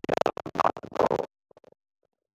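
A man speaking into a handheld microphone, his voice broken up by abrupt gaps. It cuts off to dead silence just over a second in.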